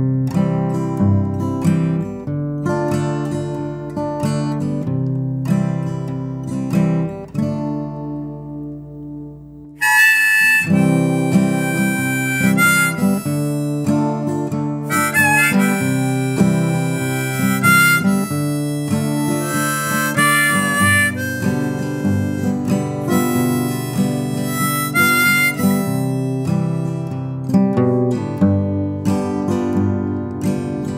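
Acoustic guitar playing an intro alone, a chord left ringing and fading a little before ten seconds in. About ten seconds in, a harmonica held in a neck rack comes in with the melody over the guitar chords.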